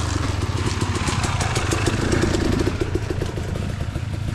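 Off-road vehicle engine running steadily at low revs, with a fast, even pulse.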